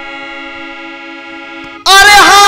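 Harmonium holding a steady chord, several reed notes sounding together. Just before the end a man's voice comes in suddenly and much louder, singing over it.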